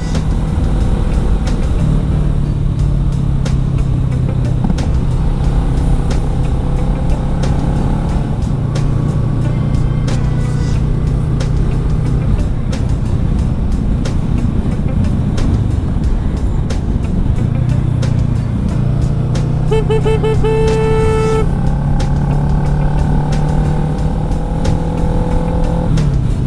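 Kawasaki ER-6n 650 cc parallel-twin motorcycle engine running under way, heard from the rider's position with wind rushing past. Its steady drone dips briefly a couple of times.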